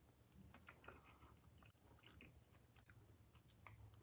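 Near silence: faint, scattered mouth clicks of a person chewing a bite of soft gooey butter cake, over a low steady room hum.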